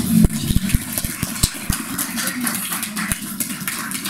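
A small group applauding: many scattered, irregular hand claps.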